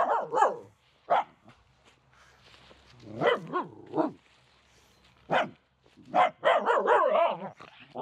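Finnish Spitz barking in excited play: a string of short, separate barks, then a quicker run of barks about three-quarters of the way through.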